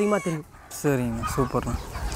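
Chickens calling in a poultry yard, a few drawn-out falling calls from the flock, heard under a man's voice.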